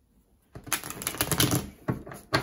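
A tarot deck being shuffled by hand: a quick run of rapid card clicks starting about half a second in and lasting over a second, ending with a sharper snap.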